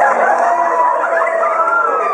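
Several people's high-pitched squeals and stifled laughter, overlapping without a pause.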